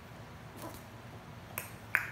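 A baby's palms slapping a hard plank floor while crawling: three short sharp taps, the loudest just before the end.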